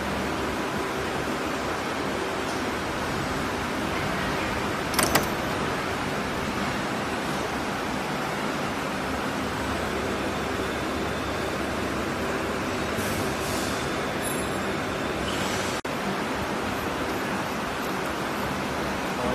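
Steady noise of factory machinery. About five seconds in comes a short, sharp double clack from a stroke of the semi-automatic terminal crimping machine, with a few fainter clicks later.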